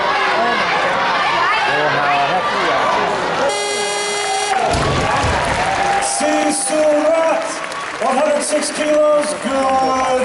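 Arena crowd shouting and cheering during a barbell lift. About three and a half seconds in, a buzzer sounds for about a second, followed at once by a low thud of the loaded barbell dropped on the platform. Then music plays under crowd voices.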